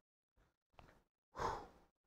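Near silence, then a man's short, audible breath about one and a half seconds in.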